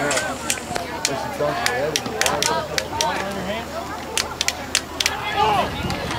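Many overlapping voices of spectators and players calling out across a football field, with scattered sharp clicks throughout.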